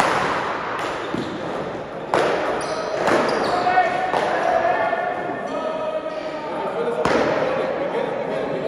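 Sharp smacks of a paddleball being struck by paddles and hitting the wall, echoing in a large indoor hall: a few in the first three seconds and another near the end, with people talking in between.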